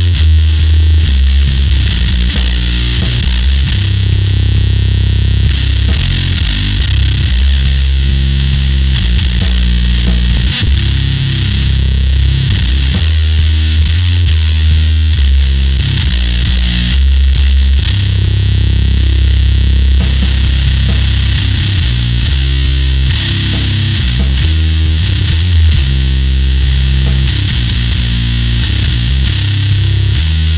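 Fender Precision bass played through a Magic Pedals Conan Fuzz Throne fuzz pedal into a Darkglass bass amp: heavy riffs with thick, gritty fuzz distortion, mixing long held low notes with quicker note changes.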